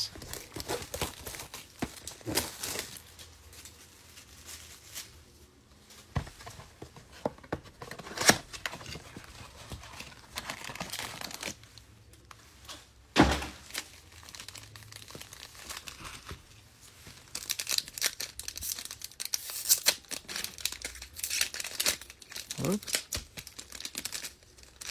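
Cellophane wrap torn off a cardboard trading-card blaster box, with a few sharp knocks as the box is opened and handled. Foil card packs crinkle densely near the end.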